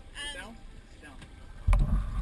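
A brief high-pitched vocal sound just after the start, then a dull low thump near the end.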